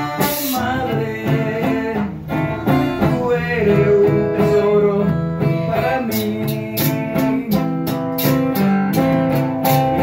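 Acoustic guitar strummed and picked in a steady rhythm.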